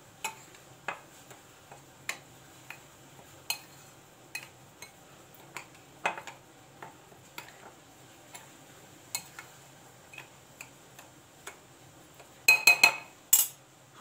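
Light, scattered clicks and taps of a kitchen utensil against cookware while stirring, a tap or two a second, with a quick cluster of louder clinks near the end.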